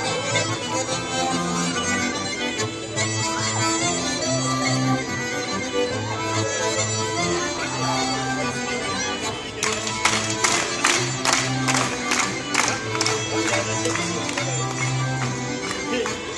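Live folk dance music: a duo playing a cercle circassien tune, a sustained melody over low bass notes. About ten seconds in, a run of sharp percussive hits keeps time with the tune for about four seconds.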